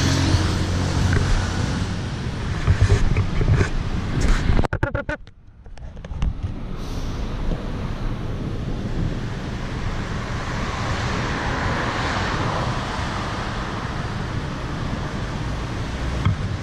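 Traffic noise from a busy city road, with wind on the camera microphone. The sound briefly drops away about five seconds in, and a vehicle swells past around the twelve-second mark.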